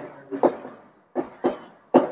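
Chalk writing on a blackboard: a run of short, sharp strokes and taps, several in two seconds, each fading quickly.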